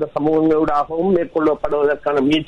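Speech only: a man talking steadily without pause.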